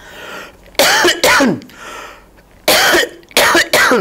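A man coughing into his fist: five harsh coughs in two bouts, two about a second in and three near the end, with a drawn breath before each bout.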